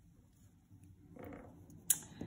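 Small metal brooch handled and turned over on a cloth-covered table: quiet handling, then one sharp click near the end.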